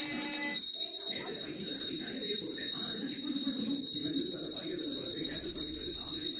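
A pooja hand bell rung rapidly and without pause during an aarti, a steady high ringing, over the murmur of people's voices.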